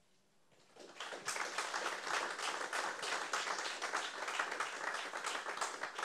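Audience applauding: many hands clapping, swelling up about a second in and then holding steady.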